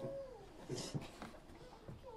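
Faint, short wavering call from a young child in the room, a brief rising-then-falling vocalisation at the start, followed by a soft hiss and a few light knocks.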